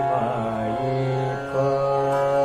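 Hindustani classical male voice singing in raga Chandrakauns over a steady drone: a wavering, ornamented phrase at the start, then long held notes.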